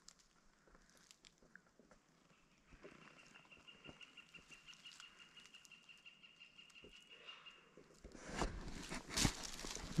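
A pileated woodpecker calling faintly: a rapid, even series of notes held at one pitch for about five seconds. Louder rustling and crunching follow near the end.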